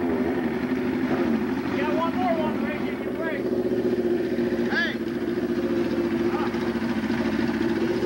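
A car engine running steadily at idle, an even low hum that does not rise or fall. A few short shouted voices come through over it.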